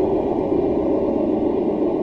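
A steady, muffled rushing noise with no pitch to it and nothing high in it. It is the sound layer of the animated outro graphic.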